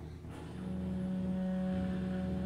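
Free improvisation on contrabass clarinet and bowed cello: a low rumbling drone, with a steady low held note entering about half a second in and sustained.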